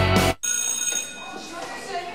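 Rock bumper music cuts off sharply about a third of a second in. After a brief gap a bell rings, many steady tones typical of an electric school bell, and fades over the next second into quiet hallway background.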